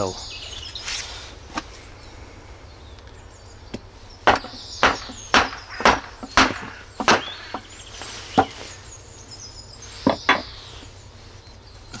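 A small hatchet driven into a lime-wood log by striking the back of its head with a round lime-wood log used as a club: a run of about ten sharp wooden knocks, unevenly spaced, starting about four seconds in, as the log is split into carving blanks.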